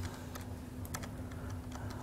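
A few faint, scattered keystrokes on a computer keyboard as shortcuts are entered, over a steady low hum.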